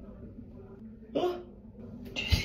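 A short, sharp vocal yelp about a second in, a reaction to pulling the protective wrap off a fresh tattoo, over a faint steady hum.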